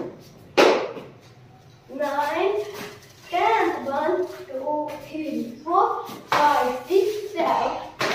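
A voice calling out short syllables in bursts, with one loud clap just over half a second in.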